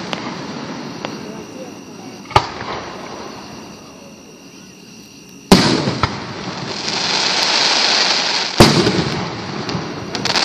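Aerial firework shells bursting overhead, with three sharp bangs: about two seconds in, about halfway, and near the end. Between the last two bangs a long crackling hiss swells as the glittering stars burn out.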